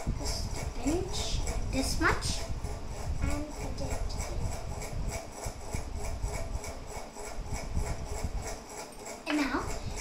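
Metal spoon clinking and scraping against a small steel cup and a plastic mixing bowl as turmeric is spooned into flour and buttermilk and stirred into batter.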